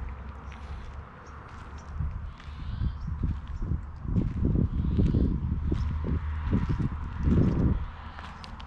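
Footsteps on gravel, heavier from about halfway in at roughly three steps a second, over a steady low rumble.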